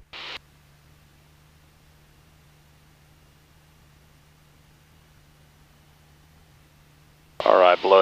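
Faint, steady low hum of the Cessna 172 Skyhawk's engine in cruise on final approach, heard through the headset intercom, with a short burst of hiss at the very start. A man's voice comes in near the end.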